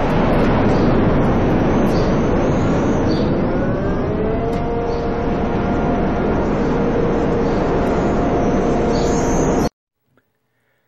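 Loud, steady rumble of an erupting volcano. A rising tone joins about three seconds in and then holds steady. The sound cuts off suddenly just before the end.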